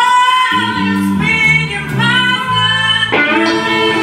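Live blues band: a woman singing a long note over electric guitar and bass guitar, with a sharp accent from the band just after three seconds in.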